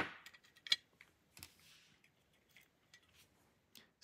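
A few faint, sharp clicks and taps of small metal parts and tools handled on a workbench. The clearest is just under a second in and another comes about a second and a half in, over a low hiss.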